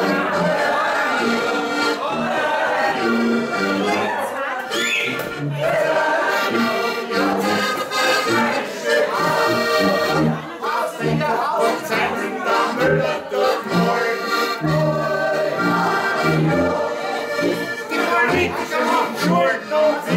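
Live Alpine folk music on several Steirische diatonic button accordions, with a tuba playing short, regularly repeated bass notes underneath.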